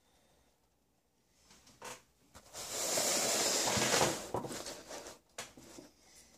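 Rubbing, rustling handling noise lasting about two seconds, loudest in the middle, from the recording device being picked up and moved close over its microphone. A click comes before it and a few light knocks follow.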